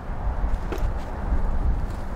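Wind rumbling on the microphone on an open boat, wavering in level, over a steady low hum.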